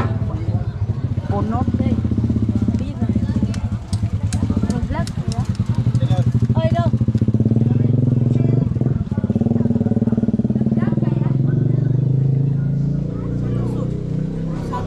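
A small engine running steadily, with a fast even pulse and a low hum, while people talk over it.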